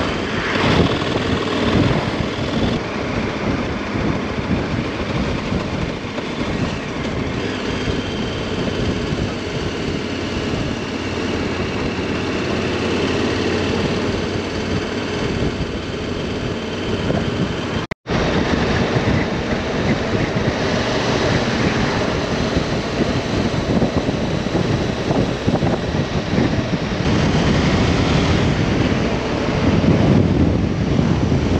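KTM Super Adventure's V-twin engine running steadily while riding at moderate speed, heard under heavy wind and road rush on the onboard camera's microphone. The sound drops out for an instant a little past halfway, at an edit.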